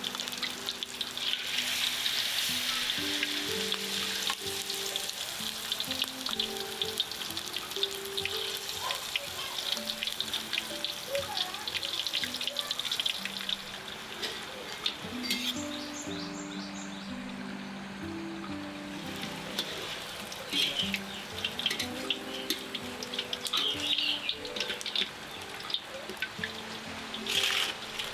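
Anchovy peyek batter sizzling and crackling in hot oil in a steel wok. The sizzle starts strongly just after the batter goes in, eases about halfway through, and comes back in crackly bursts near the end.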